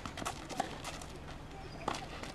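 Tennis ball being hit and bouncing on a hard court, with the player's footsteps: several light knocks early on and a sharp strike near the end.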